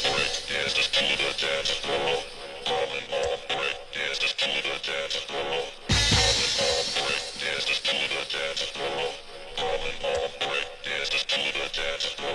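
Breakbeat dance music from a DJ mix, with a deep bass hit about halfway through.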